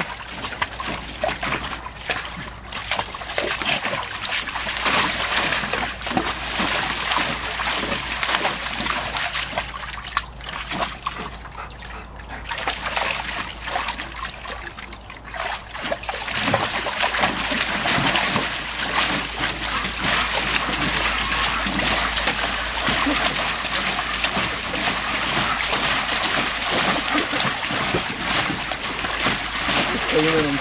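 A dog pawing and stamping in the water of a plastic kiddie pool, splashing and sloshing continuously. The splashing eases off for a few seconds around the middle and then picks up again, louder.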